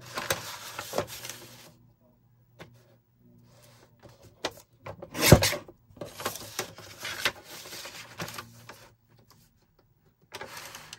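Paper rustling and sliding as a large sheet of wallpaper is pushed and smoothed into place on a paper trimmer, with one sharp knock about five seconds in.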